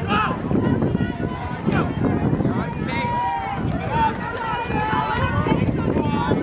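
Several spectators shouting and calling out encouragement to runners going past on the track, their voices overlapping.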